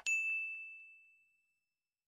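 A click, then a single bright bell ding that rings out and fades over about a second and a half: the notification-bell chime sound effect of a subscribe-button animation.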